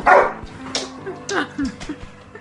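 A dog barking in about four short, excited barks that drop in pitch, the loudest right at the start.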